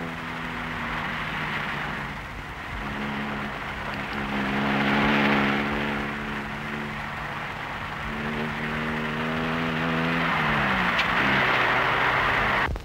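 Small car's engine running as it drives, its pitch stepping up about three seconds in, then falling away shortly after ten seconds as the car slows and settles to idle.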